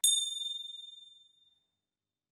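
A single high, bell-like ding, used as an editing transition effect. It strikes once and rings out, fading away within about a second.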